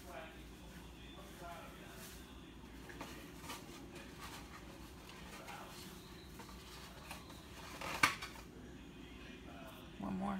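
Faint squishing and crumbling of a hand kneading damp salmon croquette mixture in a plastic bowl, with a few light ticks and one sharp click about eight seconds in.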